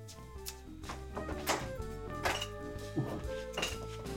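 Background music: held notes over a steady bass line, with several drum-like hits.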